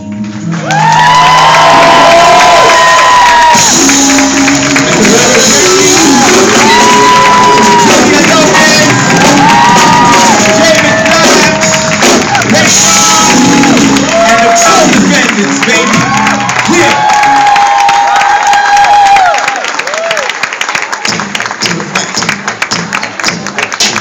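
Live band with electric guitars, drums and keyboard playing loudly under sustained sung notes as a song ends; about 19 seconds in the music stops and the audience applauds and cheers.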